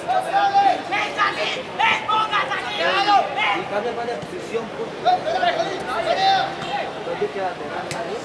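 Several people's voices calling out and chattering, raised and high-pitched, with no words clear enough to make out.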